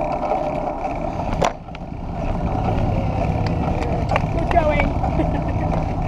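Steady wind and road noise from a bicycle ride, picked up by a camera riding along. A sharp click and a brief drop in level come about one and a half seconds in, and the low rumble is fuller after it.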